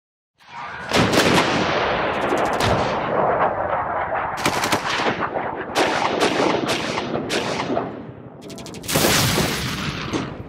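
Sound effects for an animated ink-splatter logo intro: a run of sudden, sharp hits, each dying away, with two quick rattling runs among them, and a last hit about nine seconds in that fades out.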